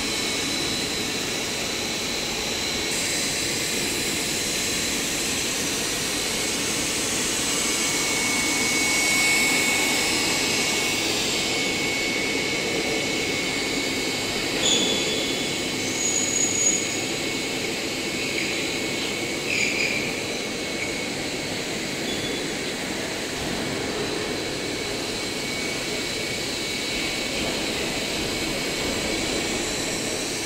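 A PVC braided hose extrusion line and its braiding machine running: steady machine noise with two thin, high, steady whines. A few short, sharp higher sounds come around the middle.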